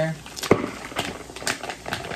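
Plastic pouch of pre-cooked rice crinkling as it is squeezed and emptied into a plastic mixing bowl, with one thump about half a second in and a run of small crackles and ticks after it.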